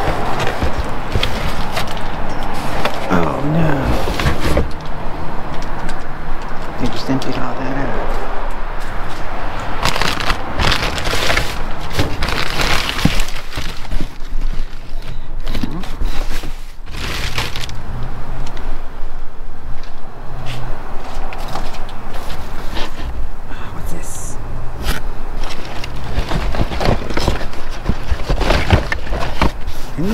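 Plastic bags and cardboard boxes rustling and crackling as a gloved hand rummages through dumpster trash, with scattered knocks and clatters of boxes and jugs being moved.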